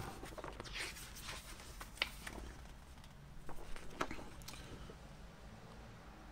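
Paper and card record inserts being handled and pulled out of a vinyl album package: quiet rustling and sliding with a few light clicks and taps.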